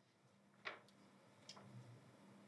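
Near silence: room tone, with a faint short click about two-thirds of a second in and a fainter one near the middle.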